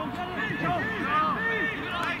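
Several voices shouting and calling across a football pitch at once, overlapping, with no words clear enough to make out.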